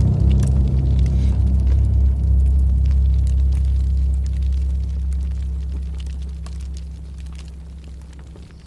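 A deep, low drone made of several held bass pitches, entering suddenly and fading slowly away, with faint scattered clicks above it.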